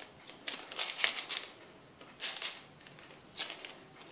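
Hand-held whisk and silicone spatula handled over a glass mixing bowl of batter and flour, making short rustling and clicking noises in three brief bursts.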